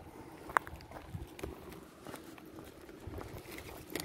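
Faint footsteps on a tarmac lane, with a sharp click about half a second in and light handling noise.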